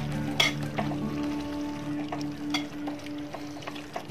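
A spoon stirring thick beef curry in an aluminium pot, with a few sharp knocks and scrapes of the spoon against the pot.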